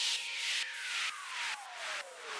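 Electronic outro effect: a single tone gliding steadily downward in pitch under swishing noise pulses about twice a second, the whole fading away.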